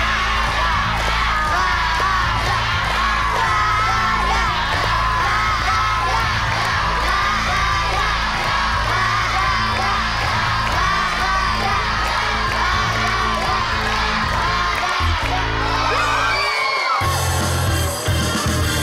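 Game-show reveal music with a steady low drone, under a crowd of children shouting and cheering. Near the end the drone cuts off and a new music cue starts.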